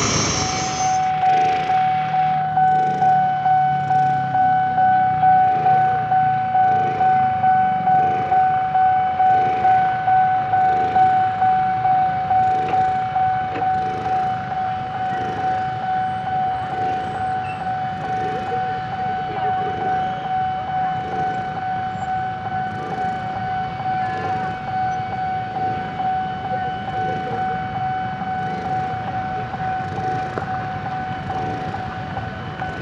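Railway level-crossing warning bell sounding: a steady high tone with a regular strike about one and a half times a second, growing a little fainter in the second half. It signals that a train is approaching and the crossing is closed.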